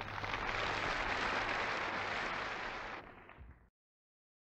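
Audience applauding on an old vinyl record, then fading out about three seconds in and cutting to dead silence just before the end.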